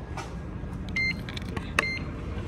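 Two short electronic beeps from a door-entry card reader, a little under a second apart, the second with a sharp click. Low rumble and handling noise underneath.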